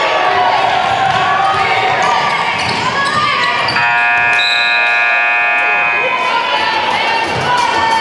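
A gymnasium scoreboard horn sounds one steady blast of about two and a half seconds, starting about four seconds in, over shouting voices from the crowd and players. It marks a stoppage in play, with the team going to its bench as for a timeout.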